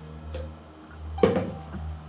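A small knock, then about a second in a loud clunk of a blender jar or drinking glass set down hard on a stone kitchen countertop, over quiet background music.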